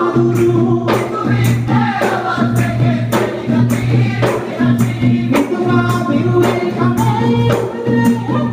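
Bodu beru ensemble: several large hand-struck Maldivian barrel drums beating a steady rhythm, about two strong beats a second, under a group of voices singing in chorus.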